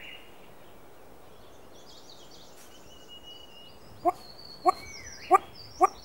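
Male satyr tragopan starting its courtship call: a series of short, sharp calls that begins about four seconds in, repeating roughly every half second and quickening. Thin high chirps and whistles from small birds sound faintly behind it.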